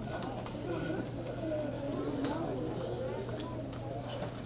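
Low murmur of people talking among themselves in a crowded hall, no single voice standing out, over a steady low hum.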